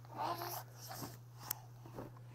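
A pet's short, faint whimpers: one about a quarter of a second in and a shorter one about a second in.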